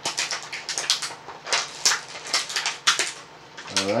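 Clear moulded plastic blister tray from a toy's packaging, crackling and crinkling irregularly as hands work it apart.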